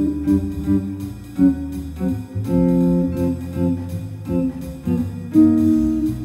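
Guild T-50 Slim hollow-body electric guitar comping short guide-tone chord stabs in a syncopated son clave rhythm, anticipating the next bar, with bass notes sounding underneath throughout.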